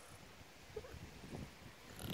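Near silence: faint outdoor background with a few soft low rustles about halfway through.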